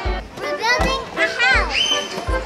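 Children's high-pitched voices and squeals over music with a steady bass beat. The loudest part is a run of sliding squeals in the second half.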